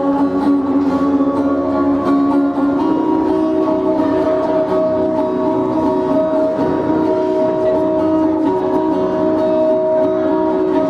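Live acoustic guitar playing through a small PA in an instrumental passage of a song. A sung phrase trails off in the first few seconds, and after that steady held tones ring under the guitar.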